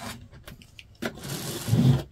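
Rotary cutter rolling along a quilting ruler's edge, slicing through layered cotton fabric onto a cutting mat. A gritty rolling sound about a second long in the second half ends in a low thud.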